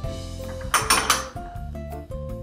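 Background music, with two quick clinks of small glass prep bowls being handled on the counter about a second in.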